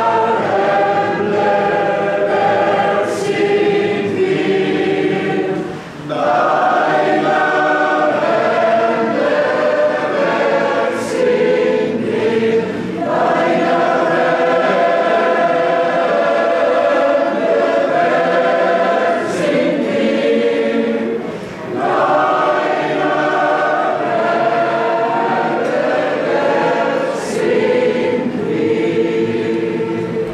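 Large mixed choir of men's and women's voices singing a sacred choral song in sustained chords, phrase by phrase, with short breaths between phrases about six seconds in and again near twenty-two seconds. A chord ends at the close.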